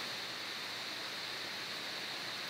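Steady hiss from the recording's microphone noise floor, even throughout with a brighter thin band in the upper range and no other sound.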